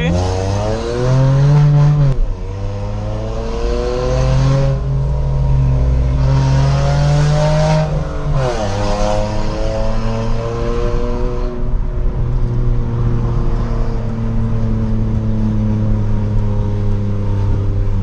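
Hyundai HB20's 1.0 three-cylinder engine and aftermarket exhaust diffuser, heard from inside the cabin, accelerating hard. Its pitch climbs and drops sharply at gear changes about two and eight and a half seconds in, then it settles into a steady cruise with the pitch slowly falling.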